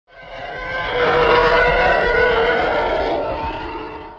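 A channel-intro sound effect that swells up from silence, holds with several steady tones over a rough low rumble, and fades away near the end.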